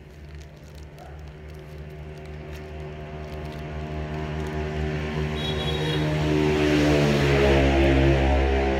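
A motor vehicle's engine running and drawing nearer, growing steadily louder and loudest near the end.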